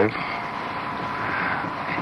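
Steady hiss of background noise in a pause between a man's sentences on an archival radio broadcast, with a faint steady tone under it.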